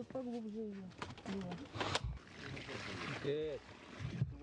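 Voices chatting, with water poured from a metal bucket onto the soil around a freshly planted sapling, a rushing splash for about a second just after the middle, preceded by a sharp knock.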